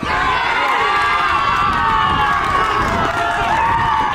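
A group of baseball players yelling and cheering together, many voices held at once without a break, celebrating a run scored at home plate.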